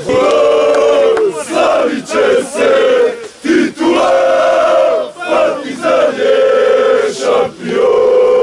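A group of men chanting loudly in unison, football-supporter style, in short repeated sung phrases with brief breaks between them.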